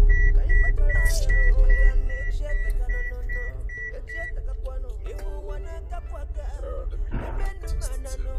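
Background film music over a car's warning chime beeping rapidly at one steady high pitch, about three beeps a second, which stops about four seconds in. A low engine rumble underneath eases off after about two seconds.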